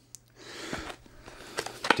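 Handling a small cardboard cable box: a soft rustle and a few light clicks and taps as it is held up and turned over in the hands.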